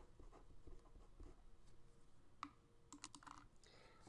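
Faint scratching and light taps of a pen writing on paper, with a sharper tap about two and a half seconds in and a short cluster of ticks near the end.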